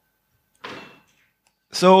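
A pause with one short, breathy whoosh lasting under half a second, then a man starts speaking into a microphone near the end.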